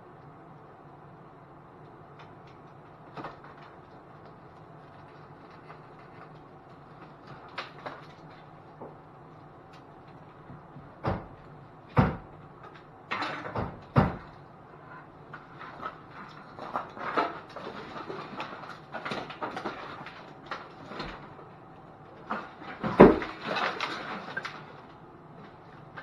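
Knocks, clunks and rattles of objects being handled and shifted inside a minivan's rear cargo area and hatch, over a faint steady hum. The first half is mostly quiet with a few small clicks, sharp knocks follow in the middle, and the loudest clatter comes near the end.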